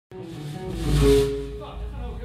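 Band instruments sounding in a rehearsal room: a held pitched note with a low rumble beneath, and a cymbal wash that swells and fades about a second in.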